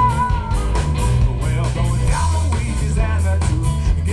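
Live blues band playing, led by electric guitar over bass and drums with a steady beat.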